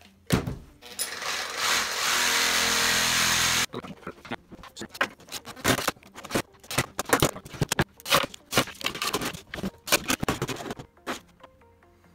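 A reciprocating saw (Sawzall) runs for about two and a half seconds, trimming a piece of two-by-two, and stops abruptly. Then comes a run of short knocks and clatter as the wooden blocks are handled and stacked on the bench.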